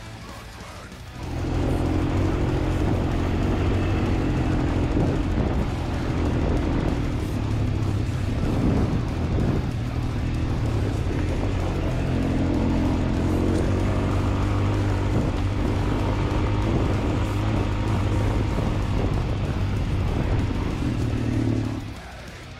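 Quad bike engine running at fairly steady revs while being ridden. It cuts in suddenly about a second in, eases briefly around the middle, and stops just before the end, with music faint on either side.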